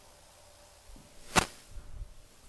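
A single sharp click about one and a half seconds in, with a few faint low thumps around it.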